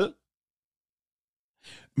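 A man's speech breaks off, then complete silence for about a second and a half, then a short, faint breath in just before he speaks again.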